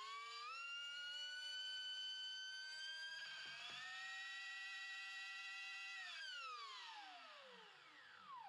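Brushless electric motor of a big 8S RC car, fed through a Castle Creations ESC, spinning up with a rising whine as the throttle ramps in gradually through a Perfect Pass launch-control delay. It holds a steady high whine with a step up in pitch about three seconds in, then winds down with a steadily falling pitch from about six seconds on.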